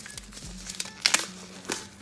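Plastic zip-lock pouch crinkling as it is pulled open, with a few sharp cracks about a second in and another near the end.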